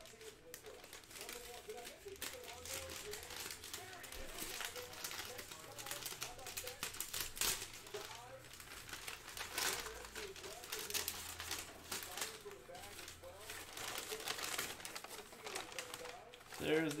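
Brown kraft packing paper crinkling and rustling in irregular bursts as it is pulled and torn away from a wrapped basketball, with faint speech underneath.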